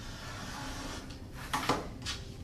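Rotary cutter rolling through folded canvas along a ruler on a cutting mat: a steady rasping cut for about a second and a half. Then a short clatter as the cutter and ruler are set down on the mat.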